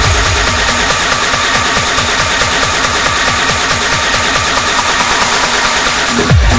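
Techno DJ set in a breakdown: the heavy kick drum drops out, leaving a fast pulsing bass under a dense wash of hi-hats and synth.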